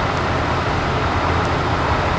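Steady road and engine noise inside a moving truck's cabin at highway speed.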